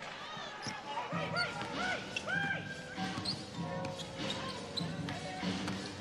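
A basketball dribbled on a hardwood court, with sneakers squeaking on the floor in short chirps as players run and cut.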